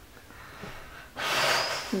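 A person's sharp, breathy exhale, like a huff or gasp, about a second in, lasting under a second.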